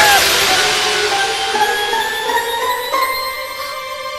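Magic sparkle sound effect: a bright, glittering chime-like shimmer that fades away over the first couple of seconds, over soft held music tones. It marks a character being magically shrunk.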